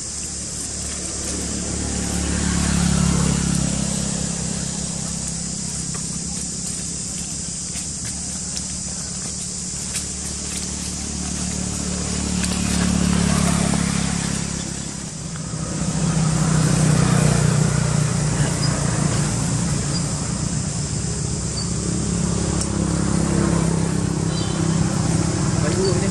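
Motor vehicle engines passing, the low hum swelling and fading about three times, over a steady high hiss.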